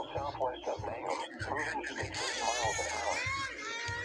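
A voice making speech-like sounds without clear words, with a high, wavering tone in the second half.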